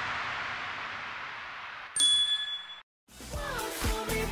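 Editing sound effect for an animated transition: a fading hiss, then a sudden high ding about two seconds in that rings for under a second and stops. After a short gap, music with a beat starts near the end.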